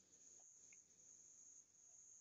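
Near silence: faint, steady, high-pitched insect trilling in the background.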